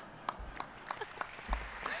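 Audience applauding: a few separate claps at first, quickly building into fuller, steady applause.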